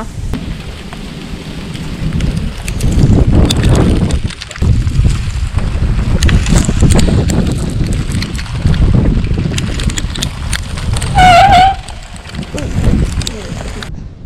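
Wind buffeting the microphone in loud, uneven low gusts, with scattered clicks and knocks as a sliding window is pulled shut. A brief high-pitched squeal near the end.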